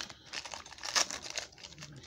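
Trading cards rustling and crinkling as they are flipped through by hand, in a few irregular spurts.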